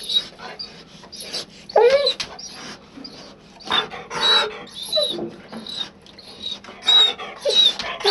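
A dog whining and crying in a string of short, high-pitched whimpers that rise and fall.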